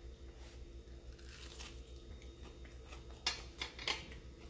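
A person biting into and chewing a panko-crumbed fried broccoli cheese ball: faint crunching and mouth sounds, with two sharper clicks near the end.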